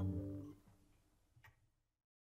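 Final strummed chord of an acoustic guitar ringing and then stopped short by the hand about half a second in, leaving a faint decay. A single faint click follows about a second and a half in.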